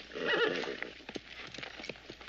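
A horse whinnies with a wavering call in the first half-second or so, then its hooves clip-clop in scattered steps as it moves about.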